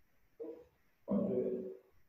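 Only speech: a man's brief words during a microphone check, with quiet gaps between them.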